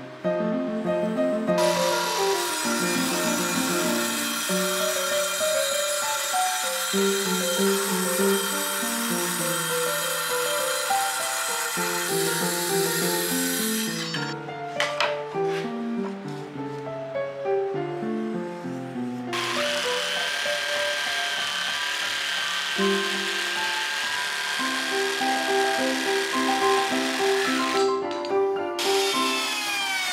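Background piano-like music plays throughout, over an electric power tool cutting wood in two long stretches, the second with a steady motor whine. Near the end the machine's pitch falls.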